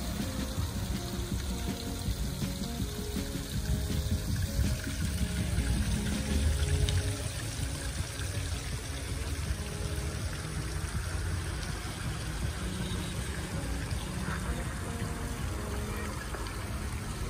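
Fountain water splashing and pouring steadily, with a melody of short held notes playing along with it; the sound swells a little about halfway through.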